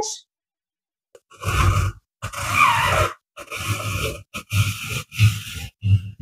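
Hand-cranked apple peeler-corer being turned, its blade taking the skin off an apple in a run of short bursts, roughly one a second, starting a little over a second in.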